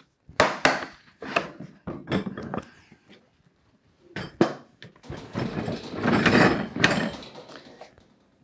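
Hard plastic Milwaukee Packout tool case being handled: a run of sharp knocks and clicks as it is closed and lifted, then a longer scraping rustle with more knocks about five to seven seconds in as it is pushed back onto a steel shelf.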